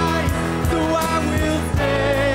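Live church worship band playing and singing a contemporary worship song: female vocals over bass, acoustic guitars, keyboard and a steady drum beat.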